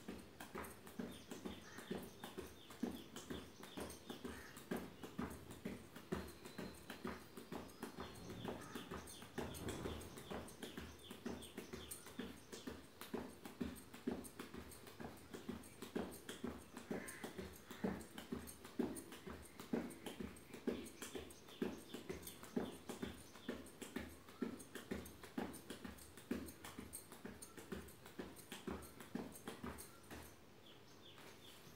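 Bare feet thumping on a tiled floor in a quick, even rhythm, about three footfalls a second, as a person jogs on the spot.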